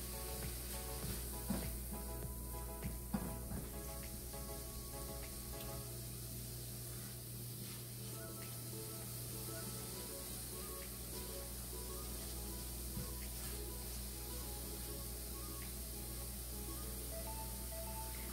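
Quiet background music over the faint sizzle of mashed tofu and zucchini sautéing in a stainless steel skillet, stirred with a wooden spoon. There are a couple of light spoon taps in the first few seconds.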